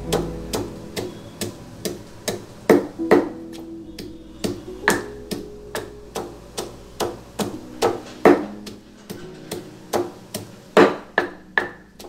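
Wooden pestle pounding dry-roasted red chillies and coconut in a stone mortar: sharp, uneven strikes about two to three a second. Background guitar music plays under the strikes.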